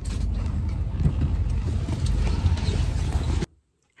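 Loud, uneven low rumble of wind and handling noise on a handheld phone microphone carried while walking outdoors. It cuts off suddenly about three and a half seconds in.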